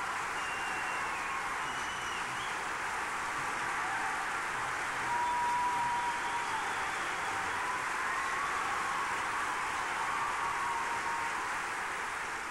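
A large audience applauding steadily, with a few whistles heard above the clapping.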